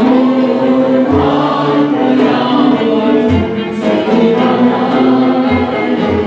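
Turkish art music choir singing with a small instrumental ensemble, sustained voices and instruments over a low drum stroke about every two seconds.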